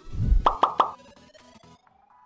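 Short electronic logo sting: a low thump, then three quick plucky notes in a row, trailing off with a faint slowly rising tone.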